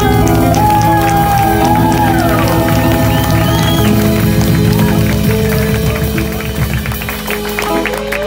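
Live band music: electric guitar playing gliding, bent notes over sustained chords, with bass and drums underneath and the low end thinning out about seven seconds in. Some audience applause and cheering sits under the music.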